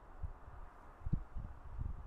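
Quiet outdoor background with a low, uneven rumble and a few soft low thumps, typical of light wind buffeting the microphone.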